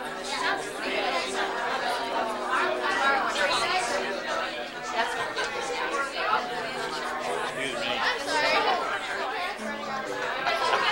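Many people talking at once: overlapping chatter from a gathered group, with no single voice standing out.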